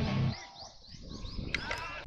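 Background music that stops suddenly about a third of a second in, leaving a quieter stretch with a quick run of high, chirping sounds and a few sharp clicks near the end.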